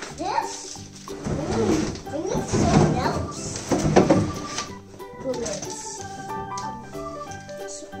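Background music plays with a steady tune. Over it, from about a second in, a large moulded plastic desk panel scrapes and rubs against the cardboard as it is dragged out of its box.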